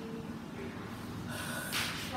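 A girl's short, sharp breath, heard as a hiss near the end, over a low steady room hum.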